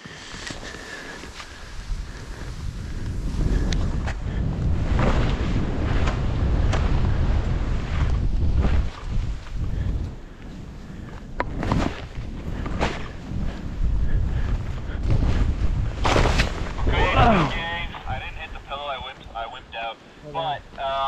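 Skis running fast through deep powder snow, with wind rushing over the helmet-camera microphone as a steady rumble that swells and eases with speed. A few sharp knocks come in the second half, and a voice calls out near the end.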